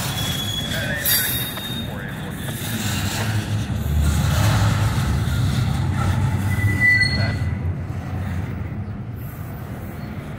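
Loaded double-stack container well cars rolling past: a steady rumble of steel wheels on rail, loudest in the middle. Brief high-pitched wheel squeals come just after the start and again about seven seconds in.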